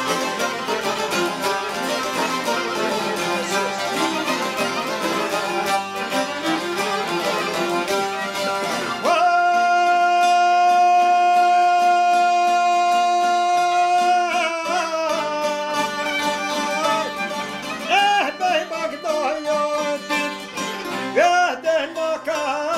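Albanian folk ensemble of plucked long-necked lutes (çifteli and sharki) with accordion and violin playing a dense, busy accompaniment. About nine seconds in, a man's voice enters on one long held note, then goes on singing in wavering, ornamented lines over the instruments.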